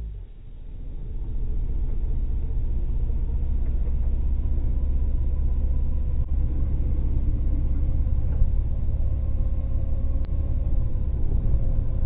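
Triumph Street Triple R motorcycle running along at low road speed, heard from the onboard camera as a steady low rumble of engine and wind on the microphone, with a faint steady whine above it. The sound swells up over the first second or so.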